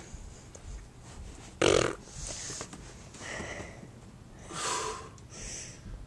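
A man breathing hard with effort while pushing up into and holding a gymnastic bridge. There is one loud, forceful breath about two seconds in, then four softer breaths about a second apart.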